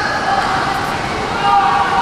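Steady rushing background noise of an indoor swimming pool, with a few faint steady tones that grow a little stronger near the end.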